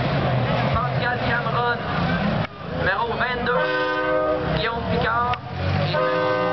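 Demolition derby car engines running, with a horn sounding twice in the second half, each blast about a second long and holding several steady tones.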